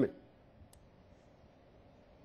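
Near silence on the line, broken by a single faint click about three quarters of a second in; the tail end of a man's voice cuts off at the very start.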